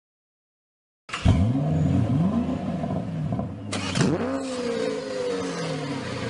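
Car engine revving, its pitch rising and falling, starting abruptly about a second in; another sharp rev swells about four seconds in.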